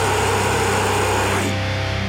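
Death metal song's final chord ringing out on distorted guitar and bass, slowly fading. A bright high wash over it cuts off about one and a half seconds in, leaving the held guitar tones.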